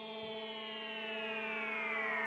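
Synthesized intro swell: a held chord of steady tones under a cluster of high tones gliding slowly downward in pitch, growing steadily louder.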